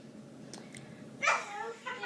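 A young girl whimpering as she starts to cry, high-pitched, coming in about a second in over faint room noise.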